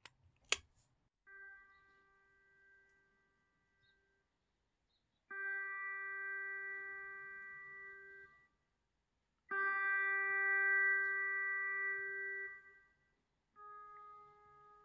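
Pedal steel guitar VST plugin sounding one sustained note three times, each about three seconds long with a short gap between and each louder than the last: the autosampler is stepping through the note's velocity layers. Two taps on a touchscreen come just before, and a quieter note begins near the end.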